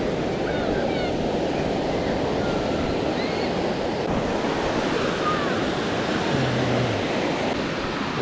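Ocean surf washing steadily onto a sandy beach, with a few faint high chirps over it.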